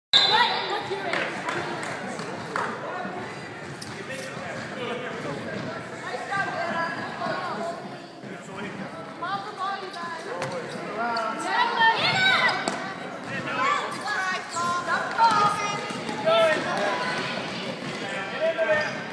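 Basketball game in a gym: a basketball bouncing on the wooden court among the players, under spectators' chatter and shouts that echo in the hall and grow louder about twelve seconds in.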